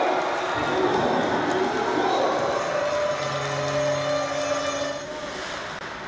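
Ice hockey arena crowd noise, with a steady horn sounding for about two seconds a little past the middle.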